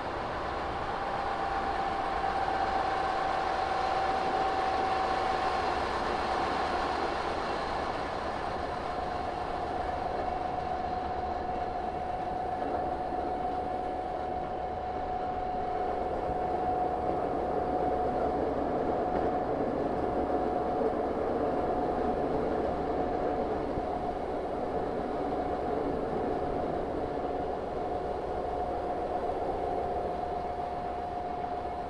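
Diesel train running along the track, a steady rolling noise carrying a sustained whine that drifts slightly lower in pitch.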